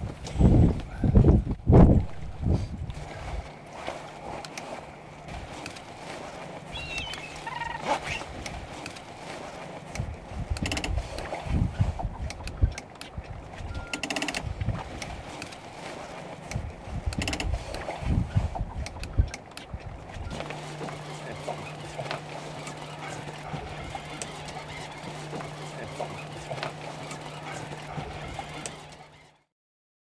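Wind rushing on the microphone aboard a small open boat, with heavy knocks and bumps from fish and tackle being handled against the hull, in clusters at the start, around the middle and again later, over a steady low hum. The sound fades out just before the end.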